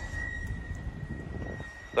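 Distant engine noise, a low steady rumble with a thin, steady high whine over it.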